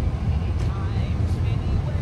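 Steady low rumble of a car's engine and tyres heard from inside the cabin as it drives slowly along a city street.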